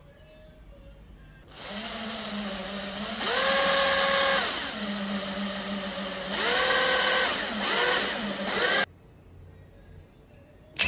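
Power drill boring a pilot hole into a wooden board with a twist bit, its motor whine starting about a second and a half in, climbing and dropping in pitch twice as the trigger is squeezed and eased, then a few short bursts before it cuts off suddenly near the end. This is the drilling step before countersinking and driving the screw.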